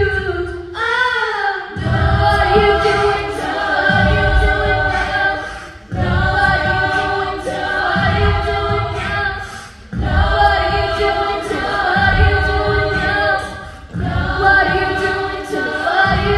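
A mixed-voice high-school a cappella group singing: held, stacked chords over a rhythmic low pulse, moving in phrases of about four seconds, each ending in a brief dip.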